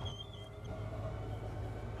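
Steady low hum of the motorhome's running generator, heard muted from inside the coach, with a faint wavering high whine in the first moment.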